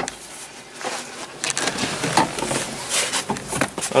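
Irregular knocks and scuffs of a small child in wellington boots climbing down the steps of a tractor cab, with a sharp knock at the very start.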